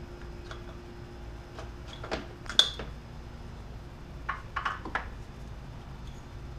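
Scattered clicks and light knocks of hard plastic and wiring being handled as bulb sockets are fitted into the back of a headlight assembly. The sharpest click, with a brief ring, comes about two and a half seconds in, and a few quicker clicks follow near the end.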